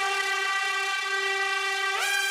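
Background music: a single long brass chord held steadily.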